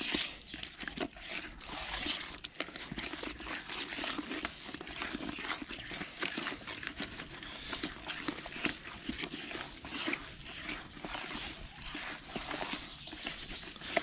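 Hand squeezing and stirring wet fishing groundbait in a plastic bucket: a continuous run of irregular wet squelches and slaps. The dry bleak groundbait has just been flooded with an equal volume of water and is soaking it up, turning into a mush.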